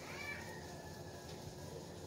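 A cat meowing once, a short faint call that rises and falls in pitch near the start.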